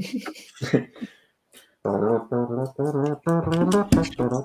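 A man singing a short tune in a low voice: a run of even, steady-pitched notes, about two a second, starting about two seconds in after a few spoken words.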